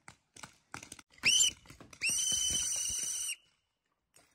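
A whistle blown twice at a high, steady pitch: a short blast about a second in, then a longer blast of about a second.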